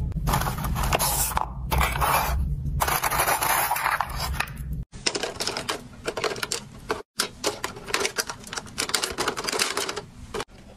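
Small plastic tubes of nail glue clattering as fingers sort through them in a plastic drawer. After a cut about five seconds in, rapid clicking and rustling of a small plastic bag of hair clips being handled.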